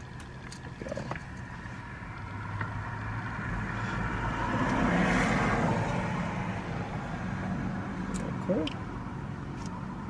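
A passing road vehicle heard through the car's open window, its noise swelling to a peak about five seconds in and then fading away.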